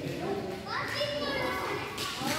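Children's voices calling out and chattering in a large echoing hall, with one high-pitched call rising and held from about halfway through.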